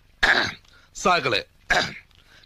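A person's voice in three short bursts with no clear words, with near silence between them.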